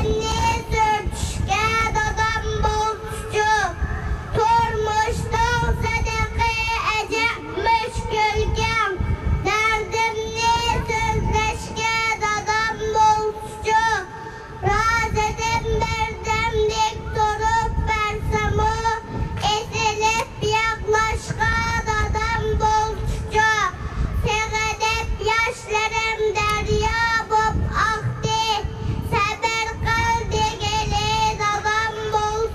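A young boy's voice through a handheld microphone and loudspeaker, reciting a poem in Uyghur in a chanting, sing-song delivery, with a brief pause about halfway.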